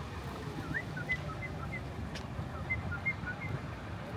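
A small bird chirping in two short runs of quick notes, alternating between a higher and a lower pitch, about a second in and again near three seconds, over a steady low rumble.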